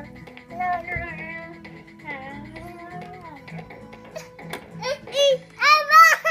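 A toddler sings wordlessly into a toy keyboard's microphone, her voice gliding up and down over a tune from the toy's speaker. Near the end she lets out louder, higher-pitched bursts.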